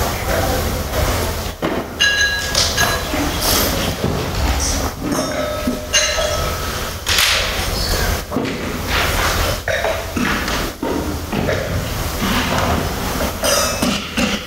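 Wine glasses clinking and being set down on tables: several short glassy rings with a few dull knocks, over the murmur of a roomful of tasters.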